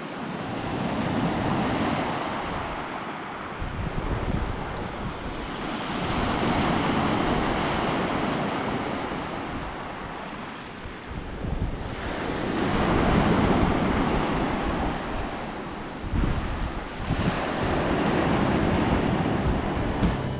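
Small sea waves breaking and washing up a pebble beach, the surf swelling and ebbing about every five to six seconds.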